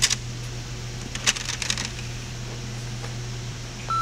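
Clicks and small plastic handling sounds as a CD is set into a home stereo's disc tray, over a steady low hum. A short electronic beep sounds near the end as a button on the stereo is pressed.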